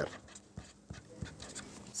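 Faint scratching and a few light ticks of a pen writing on paper.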